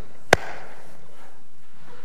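A single sharp knock about a third of a second in, followed by a brief echo.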